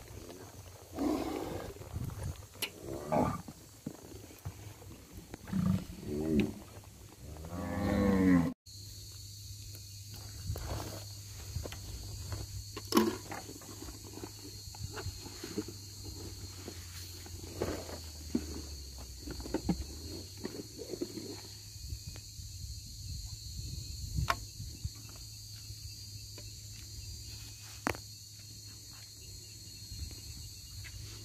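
Nelore cattle mooing, several calls in the first eight seconds, the last one rising and the loudest. After an abrupt cut, small scattered clicks of a syringe and medicine bottle being handled, over a steady high insect buzz.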